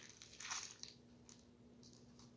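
Near silence with faint handling noise from small objects being fiddled with: one brief scraping rustle about half a second in, then a few light ticks, over a faint steady hum.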